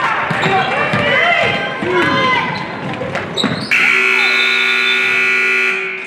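Gymnasium scoreboard buzzer sounding one loud, steady, long tone for about two seconds, starting a little past halfway through. Before it, a dribbled basketball, players' shoes squeaking on the hardwood court and voices echo in the hall.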